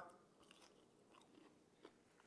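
Faint chewing of a bite of breaded, fried quail breast: a few soft crunches and mouth clicks over near silence, with a slightly sharper click near the end.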